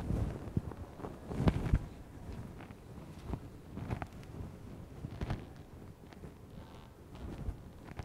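Scattered low thumps and rustles of a person moving about, the strongest pair about a second and a half in, over quiet room noise.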